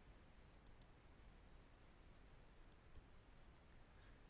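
Two computer mouse clicks about two seconds apart. Each is a quick press-and-release double tick.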